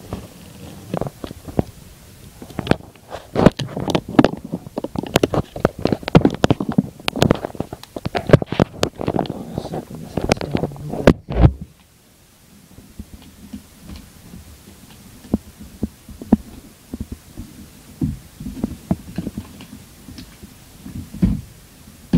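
Adhesive tape being peeled slowly off the back of a laptop LCD panel around its video cable connector: a dense run of sharp crackles and clicks for about ten seconds, which stops suddenly, then only scattered ticks and soft handling noise.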